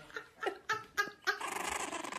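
French bulldog puppy giving a quick run of short, high yips, about five in the first second and a half, followed by a longer, rougher call.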